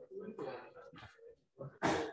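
Indistinct talking in the room, with a short, loud burst of noise just before the end.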